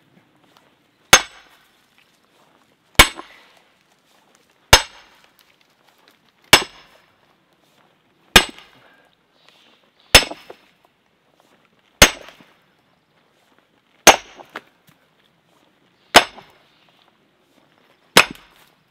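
Sledgehammer driving a steel splitting wedge into a stump: nine ringing metal-on-metal strikes, about one every two seconds.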